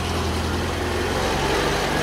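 1976 Steyr-Puch Pinzgauer 710's air-cooled 2.5-litre four-cylinder petrol engine running steadily as the truck drives past close by, swelling slightly as it draws level.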